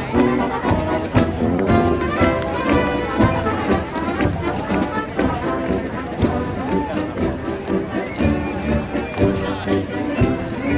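Brass band playing a tune, with the brass instruments' notes changing throughout.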